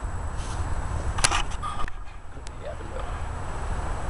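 Steady low background rumble with a single sharp click a little over a second in; the rumble drops in level about two seconds in.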